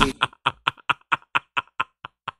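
A man laughing hard in a run of quick, breathy, unvoiced bursts, about four or five a second.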